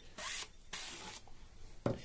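A sharpened metal tube rubbing against a block of foam filter sponge as it is twisted and drawn out of the freshly cut hole, in two short bursts of rubbing noise.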